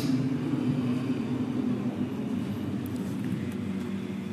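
Steady low rumble of room noise picked up by the microphone, with no voice.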